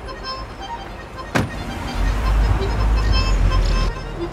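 A car door slams shut about a second and a half in, then a loud, deep rumble that stops abruptly near the end, under faint background music.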